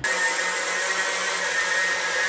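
Handheld diamond-blade power cutter sawing through a concrete wall: a steady, high-pitched whine over dense grinding noise.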